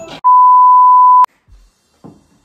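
An edited-in bleep: one steady, pure beep lasting about a second, cut off abruptly with a click.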